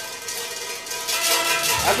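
Plastic draft-lottery beads rattling and clicking against the inside of a metal bucket as a hand stirs them, dying away within the first second.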